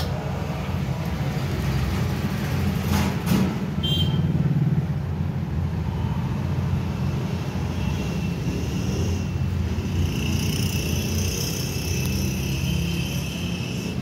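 Steady low engine-like rumble, with a faint high whine joining from about eight seconds in until near the end.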